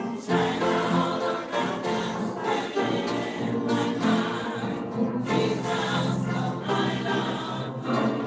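A choir singing a gospel song, voices holding long notes throughout.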